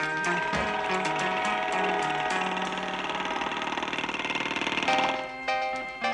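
A jackhammer sound effect rattles fast and steadily over a 1960s rock band's instrumental break. It builds to a peak about five seconds in, then cuts off, and the band's rhythmic riff comes back in.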